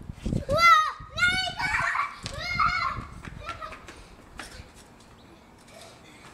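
A young child's high-pitched squeals and wordless shouts during the first three seconds, then quieter, with a few light clicks.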